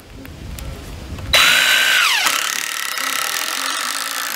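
Cordless drill driving a screw into pressure-treated lumber. The motor starts loudly about a second and a half in with a high whine that drops in pitch as the screw bites, then runs steadily.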